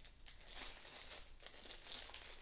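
Small plastic packet crinkling irregularly in the hands as it is pulled open, a series of quick, faint crackles.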